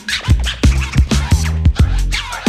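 Instrumental break of a 1980s hip hop dub mix: a drum beat and bass with turntable scratching, the record's sound swept back and forth in quick strokes between the beats.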